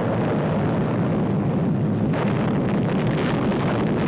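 Atomic bomb explosion as heard in a newsreel: a continuous low rumbling roar that grows harsher about two seconds in.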